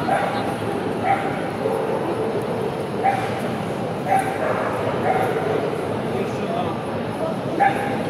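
Dogs yipping and barking in short sharp calls every second or two, over the steady chatter of a crowded hall.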